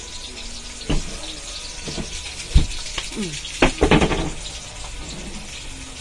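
Food frying in oil in a steel wok, a steady sizzle, with a few sharp knocks of a utensil against the pan, the loudest about two and a half seconds in.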